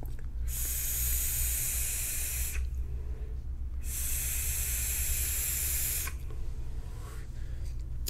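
Mad Hatter rebuildable dripping atomizer on a mechanical mod being vaped: two draws of about two seconds each. Each is a steady airy hiss of air pulled through the atomizer's airflow over the firing coil, a five-wrap 24-gauge Kanthal build.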